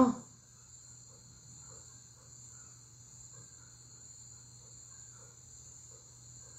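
Steady, high-pitched insect chirring with a faint low hum beneath it.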